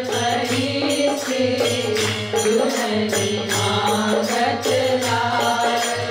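A woman singing a Hindi devotional bhajan verse to her own harmonium accompaniment, the harmonium holding steady low notes under the melody, with percussion keeping a regular beat.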